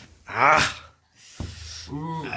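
A man's short, breathy vocal sound, about half a second long, followed by a moment of silence and a single click.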